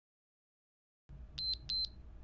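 After about a second of silence, two short, high electronic beeps about a third of a second apart, over faint room noise. It is an interval timer marking the end of a 60-second exercise interval.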